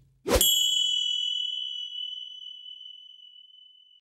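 A single bright chime sound effect struck about a third of a second in, its high ring fading slowly over the next three seconds.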